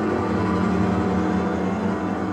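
Contemporary orchestral music for wind orchestra, double basses and Hammond organ, holding a dense, steady low chord of many sustained tones.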